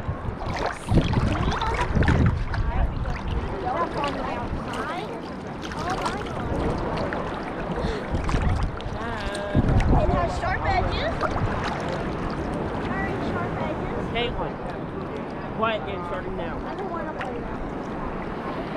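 Seawater sloshing and lapping against a camera held at the water's surface, with a few louder surges, while voices are heard faintly.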